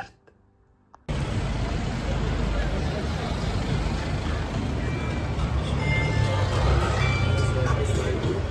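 Busy city street ambience that cuts in abruptly about a second in: a steady rumble of road traffic with the hubbub of a pavement crowd.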